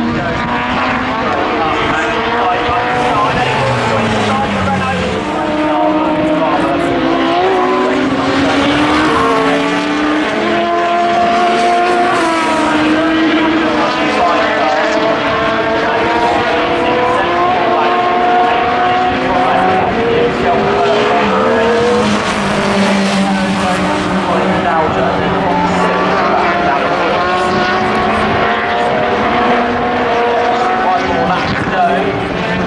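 Several 2-litre Super Touring race cars racing past at speed, their overlapping engine notes rising and falling in pitch as they accelerate and change gear.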